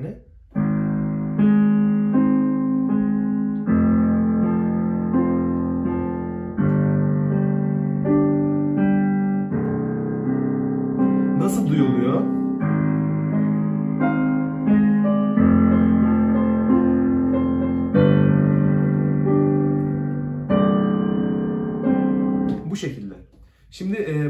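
Digital piano played with the left hand: low broken chords, the keys of each chord played in turn, moving to a new chord every two to three seconds.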